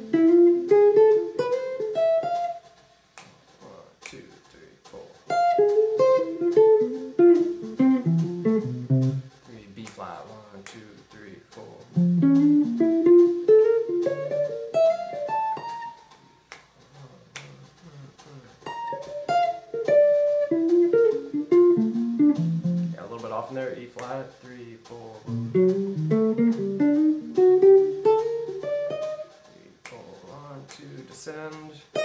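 Semi-hollow archtop electric guitar, amplified, picking single-note phrases: about five runs of a few seconds each, mostly climbing in pitch, with short pauses between. They are major-triad arpeggios with leading-tone approach notes, moved through the keys of the circle of fifths without stopping.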